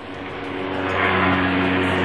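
Small motor scooter engine approaching along the road at a steady speed, growing louder.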